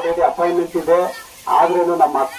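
A man speaking into a handheld microphone, with a short pause about a second in.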